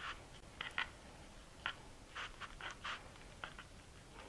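Soft, irregular rustles and scrapes of a large flour tortilla being rolled up by hand over a cream cheese filling, about nine short scrapes spread through the few seconds.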